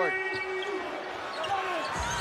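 A basketball being dribbled on a hardwood court over arena crowd noise, with a steady held tone that stops less than a second in.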